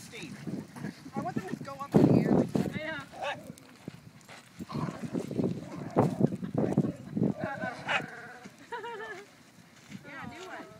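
People laughing in short wobbling bursts and calling out, with a few loud low rumbling bursts of noise, the loudest about two seconds in.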